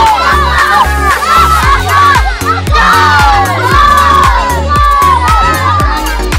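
A group of children shouting and cheering together, many high voices overlapping, over loud music with a steady, heavy beat.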